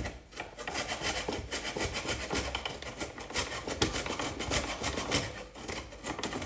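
Frozen ginger root being grated on a hand grater in a quick, irregular run of scraping strokes.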